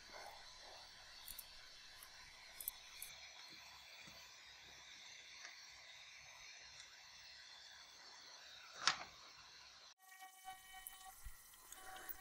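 Near silence: faint room hiss with a few soft handling clicks and one brief louder rustle about nine seconds in. After a cut near ten seconds, faint steady tones come in.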